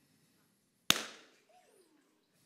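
An air-filled rubber balloon bursts in a candle flame, the heat having weakened the rubber: one sharp pop about a second in, with a short ringing tail.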